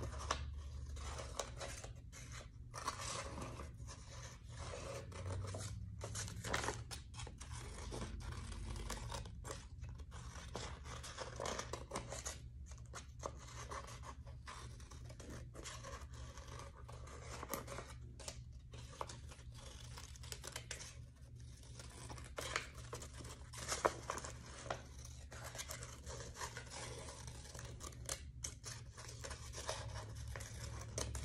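Scissors cutting through a sheet of painted paper in a long run of short, irregular snips.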